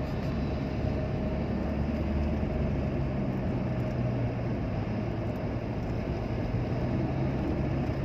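Road and engine noise inside a car cruising at about 80 km/h on smooth new asphalt: a steady low drone with a faint steady tone above it.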